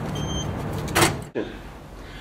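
Glass entrance door being pulled open over a steady low background hum: a brief high squeak near the start, then a rush of noise about a second in. The sound then drops suddenly to quiet room tone.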